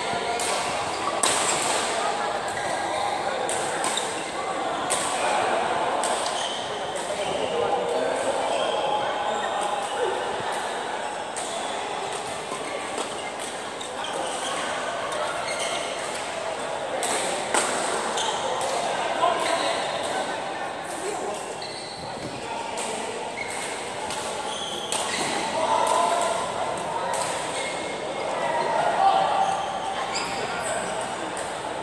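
Badminton rackets striking a shuttlecock during a rally, with sharp hits at irregular intervals that ring in a large hall. A constant murmur of voices from around the courts runs underneath.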